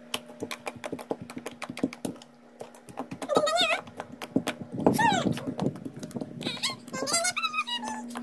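Glittery slime being poked and squeezed by fingers, giving a quick run of small wet clicks and pops. From about three seconds in, a high wavering voice, singing-like, comes in three times over the clicks and is the loudest sound near the middle.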